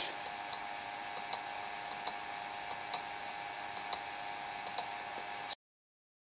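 Computer mouse button clicking repeatedly and unevenly, one press for each short marker stroke, over a faint steady hiss and hum. The sound cuts off to dead silence about five and a half seconds in.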